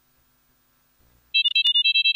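Pure-tone test stimulus played back: a fast string of short, high electronic beeps stepping between a few pitches. It starts about a second and a half in, after a near-silent pause, with a couple of clicks at its onset.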